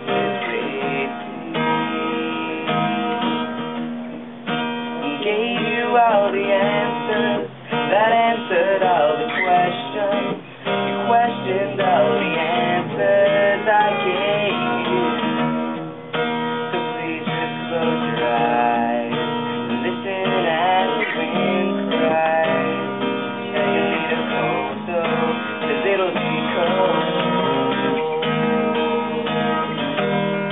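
Acoustic guitar strummed steadily through a song, with a man singing the melody over the chords.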